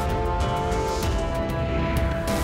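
Theme music for a news channel's logo outro: held notes over a heavy, steady bass.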